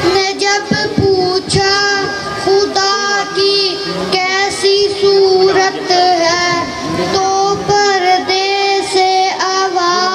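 A boy singing an Urdu naat solo into a microphone, holding long notes that waver and bend in pitch, with short breaks between phrases.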